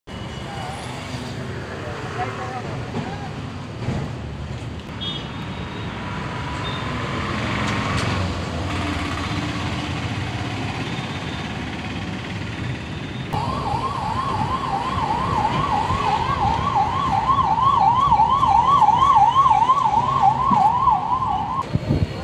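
Busy street traffic, then a little past halfway an emergency vehicle's siren starts abruptly, yelping rapidly up and down about three times a second, growing louder as it comes closer, and stops just before the end.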